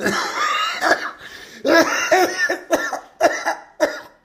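A man's coughing fit: one long, rasping cough, then a run of short coughs in quick succession.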